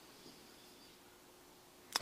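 Near silence: quiet room tone with a faint steady hum. A man's voice starts right at the end.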